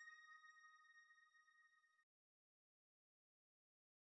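The fading tail of a bell-like chime, several steady ringing tones dying away and cutting off suddenly about two seconds in, followed by silence.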